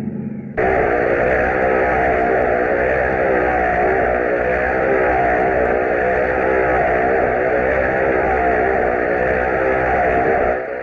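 Motorcycle engines running steadily inside a steel-mesh globe of death, starting suddenly about half a second in, their pitch wavering up and down.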